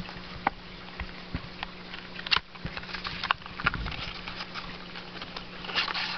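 Hands handling counterfeit Yu-Gi-Oh cards and their small cardboard box: scattered light rustles and clicks.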